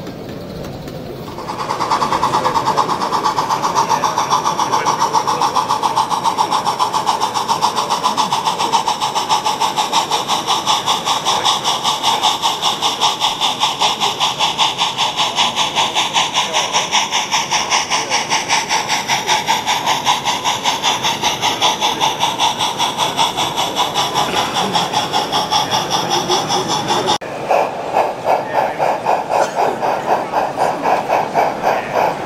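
Model steam locomotive running, with quick, even exhaust beats over a continuous steam hiss. About 27 seconds in the sound changes to slower, more widely spaced beats.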